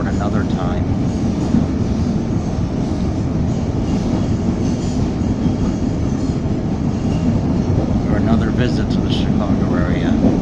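Steady running noise of a CTA Blue Line rapid-transit car at speed, heard from inside the car: a continuous low rumble of wheels on rail and motors.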